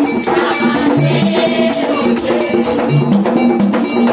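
Haitian Vodou ceremonial percussion: bell-like metal strikes and a shaken gourd rattle keep a steady quick beat over a repeating low drum pattern.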